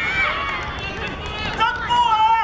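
Several high-pitched young voices shouting and calling over one another, with a couple of longer held shouts starting near the end.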